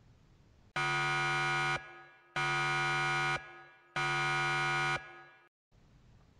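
An error buzzer sound effect, game-show style, sounds three times. Each flat, harsh buzz lasts about a second, with short gaps between.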